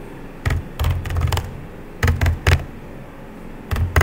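Laptop keyboard being typed on: separate keystrokes, each a sharp click with a dull thump, in short groups about half a second in, around one second, around two seconds and again near the end.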